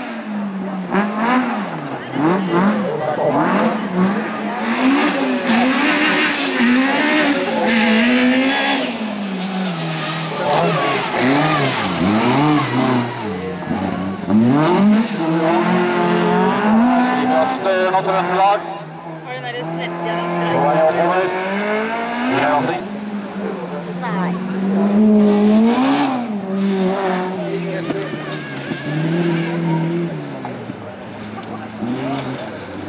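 Hatchback race car's engine revved hard up a loose hill course, its pitch climbing and dropping again and again with gear changes and lifts through the corners, with tyre noise on the loose surface.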